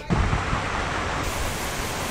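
Steady rushing and splashing of floodwater as a car drives through a flooded street, pushing a wake; the sound grows hissier a little past halfway.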